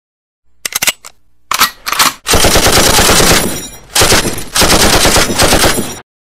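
Automatic gunfire: a few short volleys of rapid shots, then two long sustained bursts with a brief pause between them, cutting off abruptly.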